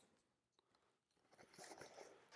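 Near silence, then faint crackling and rustling from about a second and a half in as a cardboard record box is opened and handled.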